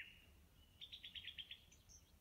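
Near silence, with a faint, quick run of about eight short high chirps about a second in.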